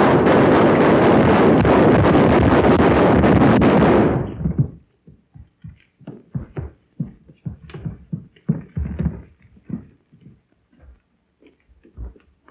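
Slapstick crash in an early sound film: a loud, rough rushing noise for about four seconds that cuts off sharply, followed by a scatter of knocks and clatters.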